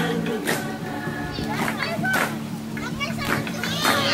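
Children shouting and calling out as they play, over background music with steady held low tones.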